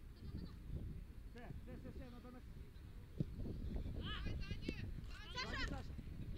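Faint, distant shouted calls from voices around an outdoor football pitch, several short rising-and-falling cries over a low steady rumble, with a single dull thump about three seconds in.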